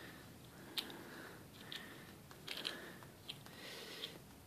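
A few faint, light clicks and handling noises, roughly a second apart, as a broken plastic fuel shut-off valve knob off a snowblower is turned over in the fingers.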